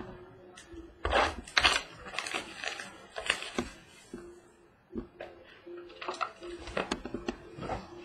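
Hands opening a sealed trading-card box: plastic wrap crinkling and tearing, with the cardboard box knocking on the table now and then.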